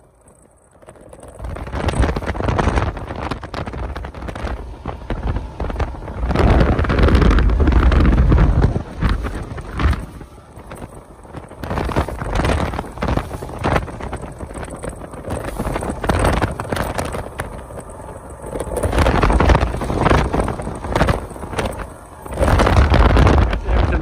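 Wind buffeting the microphone of a boat running at speed across choppy water, coming in loud gusting surges with the rush of the water beneath.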